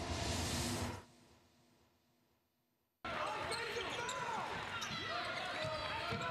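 A whooshing transition sound effect for the second-half graphic, fading away over about a second. Near silence follows, and about three seconds in live basketball game sound cuts in suddenly: sneakers squeaking on the hardwood court over crowd noise.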